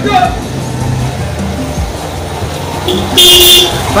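A vehicle horn honks once, a short loud blast of about half a second, a little past three seconds in.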